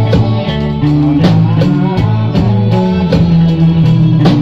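Live band music: a guitar played close by, with held low notes changing pitch, over a steady drum kit beat with cymbals.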